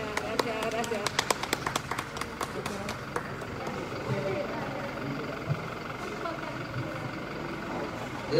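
A few people clapping, sparse separate claps at about five a second, that die away about three seconds in, leaving a low murmur of voices.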